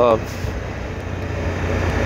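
Motorcycle engine running while riding at steady speed, with wind and road noise; the low engine hum grows a little louder near the end.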